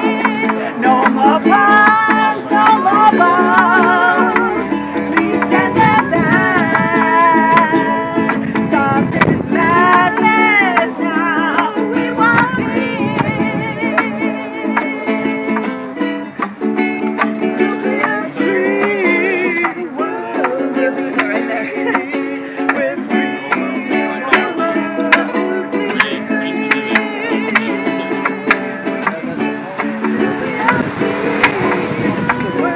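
Ukulele strummed steadily in chords, with a woman singing over it in a wavering voice.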